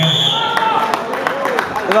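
Voices in a large, echoing sports hall, with a few sharp clicks.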